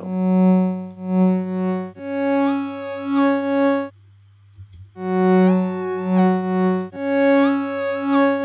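Additive synth patch in Logic Pro's Alchemy, on a triangle wave, looping a two-note phrase: a low note pulsing three times, then a higher note pulsing three times, while the upper harmonics step up and down in pitch. The phrase stops briefly about four seconds in and starts again, its tone shifting as the Harmonic effect's fundamental amount is turned up and down.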